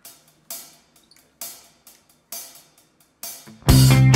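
A drum backing track opens with a few sharp cymbal hits about a second apart, a count-in; just before the end the full band comes in loud, drums with sustained low notes and an electric guitar through a crunch amp model.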